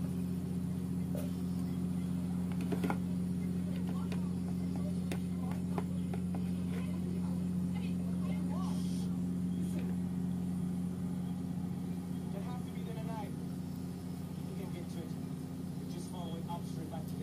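Garlic frying gently in oil in a pot set in an electric rice cooker: faint scattered crackles over a steady low hum.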